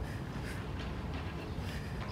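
Soft scuffs of sneakers on grass during skipping footwork, a few light steps, over a steady low rumble.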